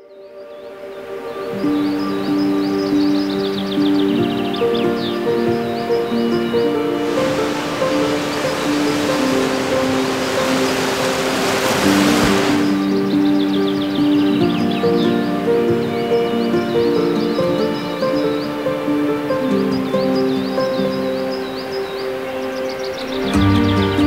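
Slow ambient music of long held notes, fading in at the start, with birds chirping throughout. Rushing waterfall water joins for several seconds in the middle.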